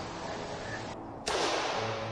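A single gunshot sound effect about a second and a quarter in: a sudden sharp crack followed by a long hissing fade.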